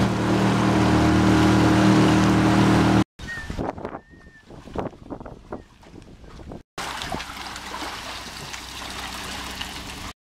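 Outboard motor of a small jon boat running steadily under way for about three seconds, cut off abruptly. Then a quieter stretch of scattered knocks and clicks, and a steady lower rumble near the end.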